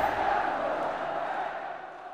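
Intro sound effect for a logo animation: a noisy swell with a steady tone running through it, fading away over about two seconds.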